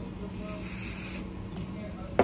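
Aerosol can of hair spray sprayed in one short burst of about a second, a steady hiss.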